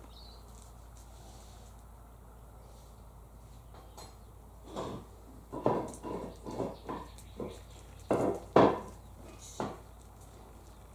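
Australian king parrot feeding on privet berries: an irregular string of short clicks and knocks from its beak working the berries, starting about halfway in, with the loudest ones near the end.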